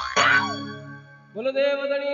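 Live Rajasthani devotional bhajan accompaniment on harmonium and electronic keyboards. The beat stops on a final struck chord with a falling pitch glide that fades away. About one and a half seconds in, a new steady held note starts.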